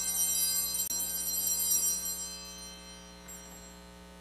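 Altar bells ringing at the elevation of the chalice during the consecration, their bright, high ringing dying away over about two to three seconds, over a steady electrical hum.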